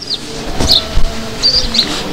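Small birds chirping: several short, high chirps scattered through, over low background noise with a few soft knocks.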